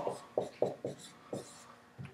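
Marker writing on a whiteboard: a few short strokes of the tip as the letters "FeO" are written.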